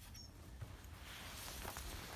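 Faint rustling and light shuffling of a small child moving through a plastic play structure on grass, over a low wind rumble on the microphone. A brief high chirp comes just after the start.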